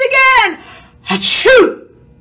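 A woman's acted, theatrical sneeze: a drawn-out 'ah… ah-choo!' with the loud, breathy 'choo' about a second and a half in.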